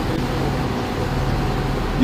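Steady background drone: even noise with a low hum underneath, unchanging throughout.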